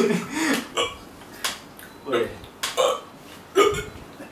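A man's laughter trailing off, then about four short, throaty, burp-like gasps spaced under a second apart: an acted fit of choking for breath.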